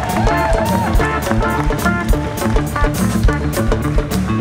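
Live band playing an instrumental groove, with a steady drum-kit beat under bass and guitar.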